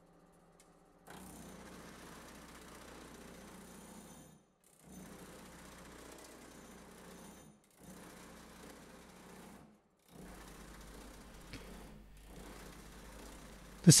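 Pullmax reciprocating metal-shaping machine running, its shrinking dies rapidly working the edge of a sheet-metal panel to shrink it. It goes in four stretches of a few seconds each with short breaks between.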